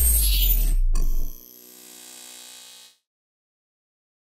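Logo-reveal sound effect: a deep, rumbling boom that drops away about a second and a half in, leaving a faint ringing tail that dies out about three seconds in.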